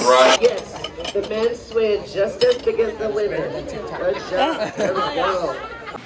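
Indistinct talking and chatter of several voices, softer than close speech, with a few light clinks.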